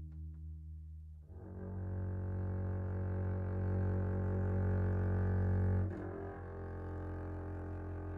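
A bowed low string instrument in a slow jazz piece, holding one long sustained note from about a second in, then moving to a softer note about six seconds in.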